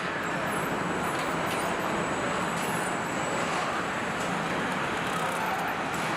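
Steady din of a car assembly-line floor: an even wash of machinery and workshop noise with faint steady high-pitched whines, unchanging throughout.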